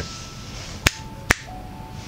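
Two sharp finger snaps about half a second apart, over faint background music.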